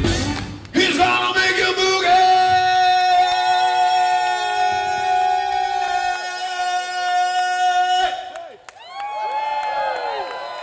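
Live rock band holding one long, steady sustained note with no drums under it; it cuts off about eight seconds in and the crowd whoops and shouts.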